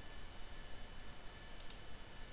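A faint, short computer mouse click near the end, selecting an item from a software menu, over quiet room hiss.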